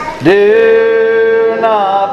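A solo voice singing a slow song, sliding up into a long held note about a quarter second in and dropping at the end of the phrase near the end.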